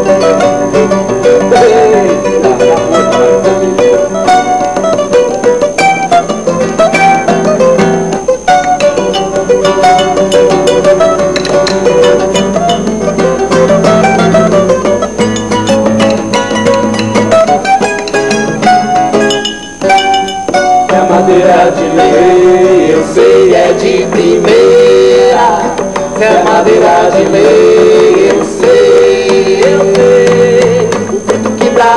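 Classical nylon-string guitar and a small mandolin-type plucked string instrument playing an instrumental tune together, with a brief pause about twenty seconds in.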